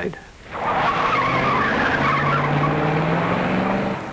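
Traffic of late-1940s cars waiting at an intersection, engines running and revving, starting about half a second in after a brief lull. One engine note rises slowly in pitch near the end.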